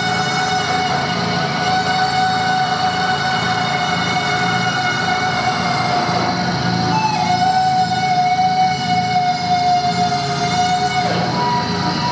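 Live drone music from effects pedals and amplifiers: one loud, steady held tone with many overtones, which shifts pitch about seven seconds in and slides down near the end.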